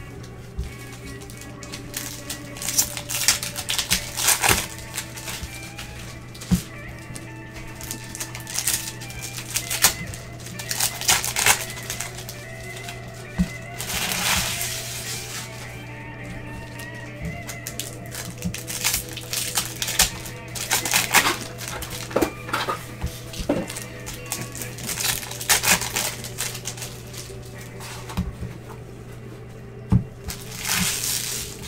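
Bowman baseball card packs being opened and their cards handled: repeated short bursts of foil-wrapper crinkling and cards sliding and flicking through the fingers, over quiet background music and a steady low hum.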